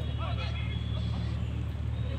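Brief, indistinct distant voices over a steady low rumble.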